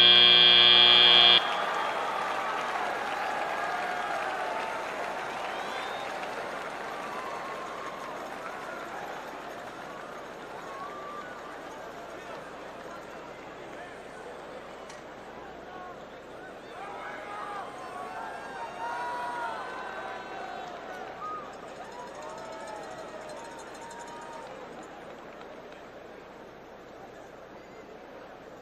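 End-of-match buzzer sounding as a loud steady tone that cuts off about a second and a half in, followed by arena crowd noise and voices that slowly fade, with a swell of voices about two-thirds of the way through.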